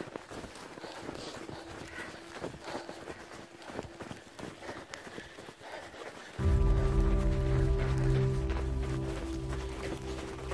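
Running footsteps in soft, slushy snow, a quiet run of irregular crunches. About six and a half seconds in, background music with low sustained chords comes in suddenly and is much louder.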